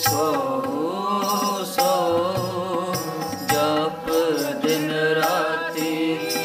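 Sikh devotional keertan: a man singing a shabad in a gliding, ornamented melody over the steady sustained chords of a harmonium (vaja). Tabla strokes accompany him.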